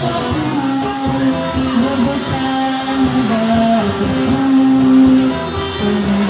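A small live acoustic band playing through loudspeakers: strummed acoustic guitars with a cajon, under a slow melody of long held notes.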